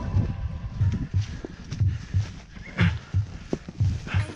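Climbing boots kicking steps and an ice axe plunging into firm snow on a steep slope: a steady run of dull thuds, roughly two a second, with crunching between them.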